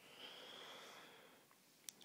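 Near silence with a faint breath lasting about a second and a half, then a single small click just before the end.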